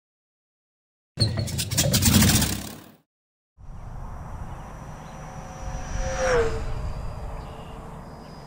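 Electric ducted-fan model jet (E-flite F-15 Eagle, a single brushless motor driving a 64 mm fan) flying past: a steady whine over a rush of air, its pitch dropping as it passes by a little over six seconds in. Before it, a short, loud burst of rushing noise lasting about two seconds that cuts off abruptly.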